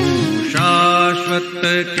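Gujarati devotional song (bhakti pad) music between sung lines: a sustained melodic line over steady accompaniment, with a pitch bend about half a second in before the notes settle.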